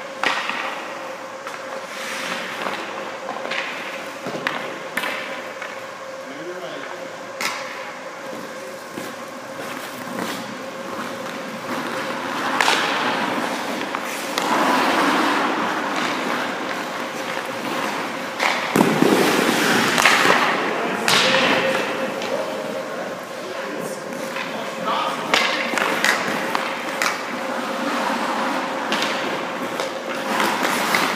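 Hockey skate blades carving and scraping across rink ice, with stick-and-puck clacks and thuds of pucks striking the goalie's pads. The hardest hit comes about 19 seconds in. A steady hum runs underneath.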